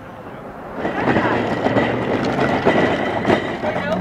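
Indistinct chatter of several people talking, becoming much louder about a second in, over a steady low engine hum.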